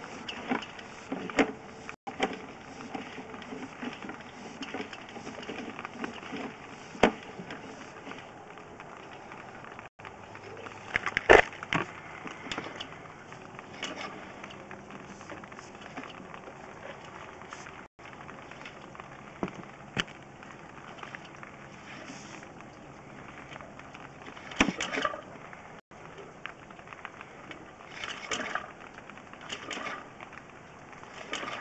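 Sewer inspection camera's push cable being pulled back and fed by hand, with scattered clicks and knocks over a low steady noise and a louder clatter about eleven seconds in.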